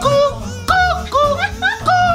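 A man imitating a cuckoo clock with his voice: a quick string of high 'cuck-oo' calls, each a higher note dropping to a lower one, about two a second.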